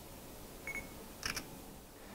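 Sigma fp L mirrorless camera: a short, high focus-confirmation beep about two-thirds of a second in, then the camera's shutter sound, a quick double click, just over a second in. The fp L has no mechanical shutter, so this is its simulated shutter sound.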